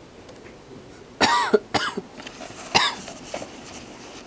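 A person coughing three times in quick succession, starting about a second in.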